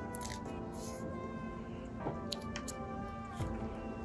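Background music with steady sustained tones, and a few faint crinkles and clicks as fingers press adhesive wrap down around a lithium-ion phone battery.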